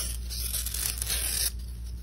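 Box-cutter blade slicing through floral foam in light beveling cuts around the edge of a disc, stopping about a second and a half in.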